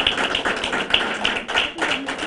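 Applause: many people clapping their hands.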